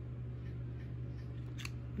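A few light clicks from hard plastic gear being handled, the sharpest near the end, over a steady low hum.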